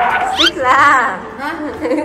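High-pitched whining, yelping cries whose pitch sweeps up sharply and then wavers.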